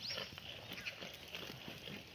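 A herd of black goats feeding on scattered dry vines and leaves: stems rustling and crackling as they are pulled and chewed, hooves shuffling on stony ground. A few short high chirps are mixed in.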